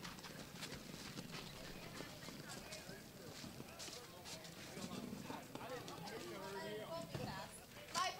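Faint field-level ambience: distant voices chattering, with scattered sharp clacks and knocks.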